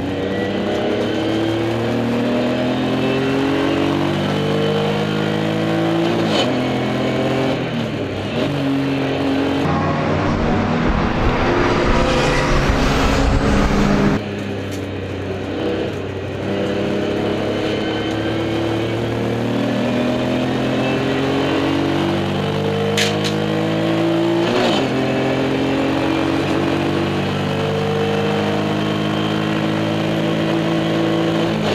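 Race car engine heard from inside the cockpit, revving up in repeated rising steps through the gears and falling back between them. For a few seconds near the middle a loud rumbling noise covers it, then cuts off suddenly.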